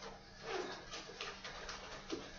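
Faint handling sounds, soft rustles and a few light knocks, over a steady low hum, as someone reaches for and moves a small container.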